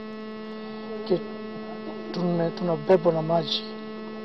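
Steady electrical hum with a ladder of overtones in the recording, with a man's voice speaking briefly about a second in and again from about two seconds to three and a half seconds in.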